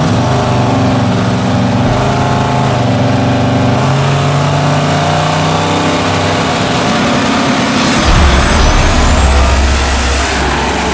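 Drag-race cars, a Fox-body Mustang and a Camaro, running at the starting line with engine pitch wavering up and down as they stage. About eight seconds in they launch, and the sound turns louder and deeper under full throttle.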